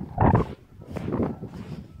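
Heavy, gasping breaths of someone exerting himself on a sand dune, three short bursts about a second apart, the first the loudest, with footfalls in loose sand.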